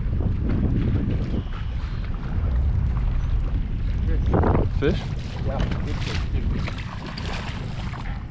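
Wind buffeting the microphone on a boat over choppy lake water: a steady low rumble, easing a little near the end.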